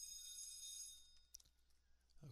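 Near silence: faint room tone with a steady high-pitched hiss that cuts out a little past halfway, then one faint click.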